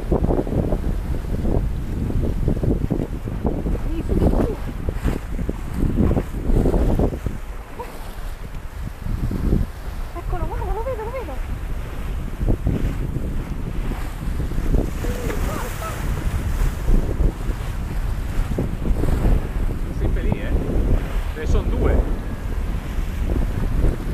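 Strong wind buffeting the microphone in gusts over the rush of waves and churning wake water from a sailboat running downwind in strong wind. A brief louder hiss of water comes about midway.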